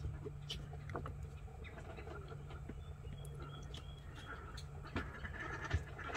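Quiet background: a steady low hum with a few faint scattered clicks and small rustles, and a slightly sharper tick near the end.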